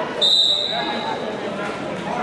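A referee's whistle blown once: a single high, steady blast of about a second that starts sharply and fades out.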